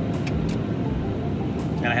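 Steady road and engine noise inside a moving car's cabin, a low even rumble that runs without a break.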